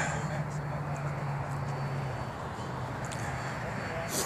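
Steady low hum of a GWS Slow Stick's electric motor and propeller overhead, dropping slightly in pitch and fading about halfway through, over a constant rushing noise.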